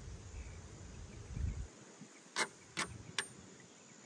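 A few light, sharp clicks about half a second apart, a metal spoon knocking against the jar and cap while measuring oxalic acid powder, after a low wind rumble on the microphone.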